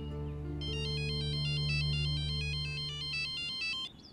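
Mobile phone ringing with an electronic melodic ringtone: a quick run of high stepping notes that starts about half a second in and stops just before the end as the call is answered. Soft sustained background music chords sit underneath.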